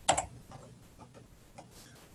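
A few light computer-mouse clicks, the first just after the start the loudest, the rest faint and spaced irregularly.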